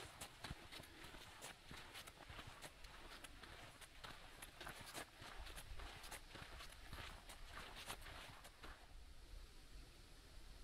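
Faint footsteps of a hiker walking on a sandy dirt track, about two steps a second, stopping near the end.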